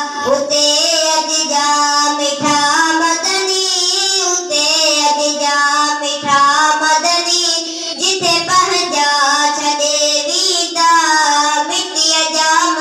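A boy singing a naat solo into a microphone, without instruments, in long, wavering melodic phrases with short breaks for breath.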